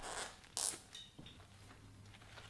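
Clear slime packed with shredded paper bills being pressed and stretched by hand: two short crinkling rustles in the first second, the second one brighter, then a few faint squelching ticks.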